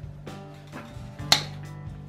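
A single sharp snip about a second and a half in, as hand cutters close through an artificial flower stem, over steady background music.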